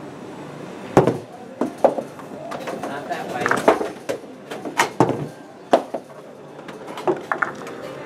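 Arcade ambience: indistinct background voices with several sharp knocks and clacks scattered through it.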